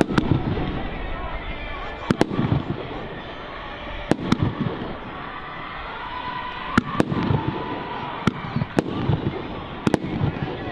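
Aerial firework shells bursting overhead: sharp bangs every second or two, a few coming in quick pairs, over the murmur of background voices.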